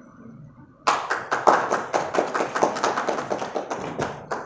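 A small group of people applauding, breaking out suddenly about a second in and slowly dying down toward the end.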